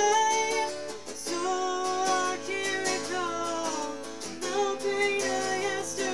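A young woman singing a melody while strumming chords on an electric guitar, with brief breaks between sung phrases.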